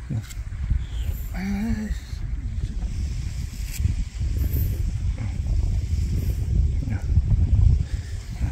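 Low, uneven rumble of wind buffeting the microphone, with a brief snatch of voice about a second and a half in.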